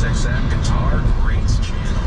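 Steady low road rumble and tyre noise inside a car cabin on a rain-wet freeway.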